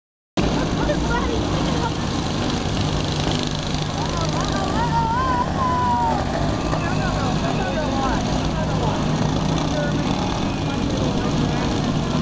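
Several riding lawn mower engines running at once in a steady drone, with voices in the crowd shouting over it, most strongly between about four and seven seconds.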